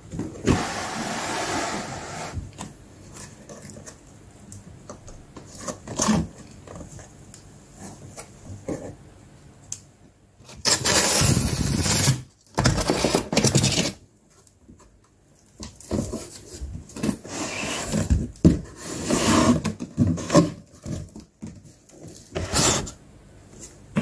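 Corrugated cardboard box being handled and pulled off polystyrene packing: cardboard sides and flaps scraping, rubbing and rustling in several separate bursts, with quieter pauses between.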